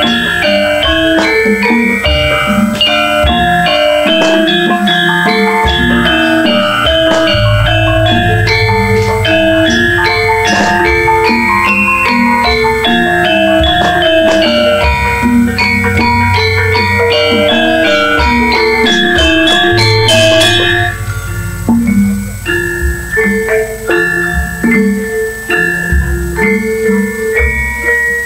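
Javanese gamelan playing: bronze metallophones ringing out interlocking melody notes over kendang drum strokes and a deep, sustained low hum. About 21 seconds in, the full, loud texture drops to a sparser, quieter passage of single struck notes.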